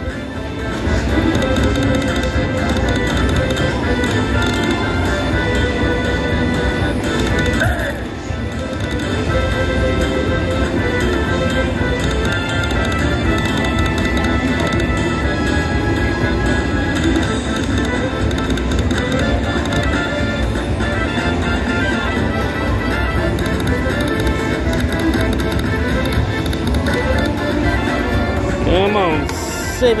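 Mariachi Party video slot machine playing its bonus-round music and jingles through a free-spins feature, over casino background din.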